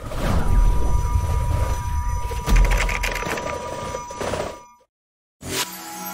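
Animated outro sound effect: a loud, noisy sound with heavy bass and a steady high ringing tone starts suddenly and cuts off after about four and a half seconds. After a short silence, a sparkling bell-like chime begins near the end.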